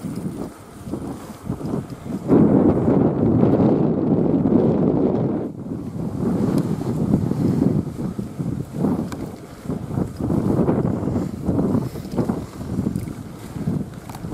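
Wind buffeting the microphone of a camera on a moving bicycle, an uneven gusting rush that is loudest from about two seconds in for a few seconds, then keeps surging and easing.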